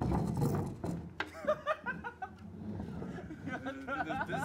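Young men laughing and exclaiming, starting with a loud outburst, with a sharp click about a second in.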